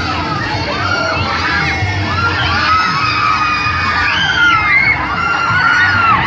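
Riders screaming and shouting on a spinning, tilting carnival ride, many voices at once, over a low steady rumble.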